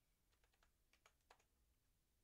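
Near silence, broken by a few faint clicks of typing on a computer keyboard.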